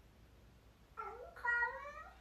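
A domestic cat meowing twice, starting about a second in. The second meow is longer and louder, rising in pitch, and the pair sounds like "bro, are you coming".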